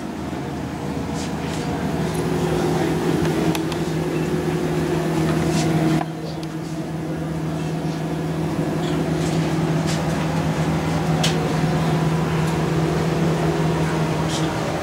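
A steady low mechanical hum with a clear pitch, swelling louder over the first few seconds, breaking off abruptly about six seconds in and building again, with a few faint ticks over it.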